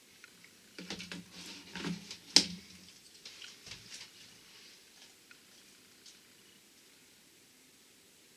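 Small clicks and rattles of a glass hot sauce bottle, its cap and a wooden spoon being handled, with one sharp click about two and a half seconds in; the handling noise stops about halfway through.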